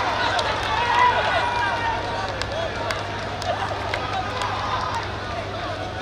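Many voices shouting and cheering over one another as a football goal is celebrated, with a few sharp claps and a steady low hum underneath.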